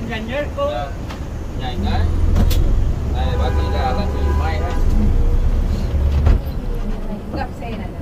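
Coach's diesel engine and road noise heard from inside the cabin as the bus drives along. The deep engine rumble swells about two seconds in and cuts back abruptly a little after six seconds, as when the driver comes off the throttle or changes gear.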